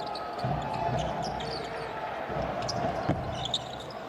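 A basketball being dribbled repeatedly on a hardwood court, with the steady murmur of an arena crowd behind it.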